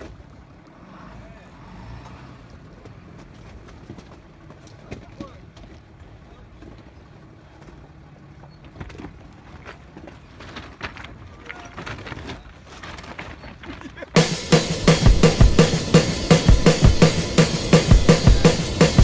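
A truck crawling over a rough, rocky dirt track, heard from inside the cab: a low rumble with scattered knocks and rattles. About fourteen seconds in, loud strummed rock-guitar music cuts in abruptly and takes over.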